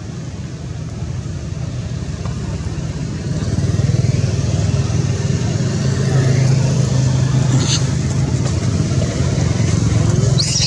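A motor engine running with a steady low hum, growing louder about three seconds in and then holding steady.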